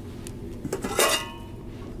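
Stainless steel plate cover lifted off a plate of food: a light clink, then a sharper metal clink about a second in that rings briefly.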